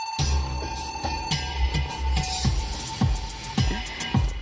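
A new track starts about a quarter of a second in: electronic-style music with a heavy bass beat, played from a portable CD player through the car's stereo. A steady high whine runs underneath.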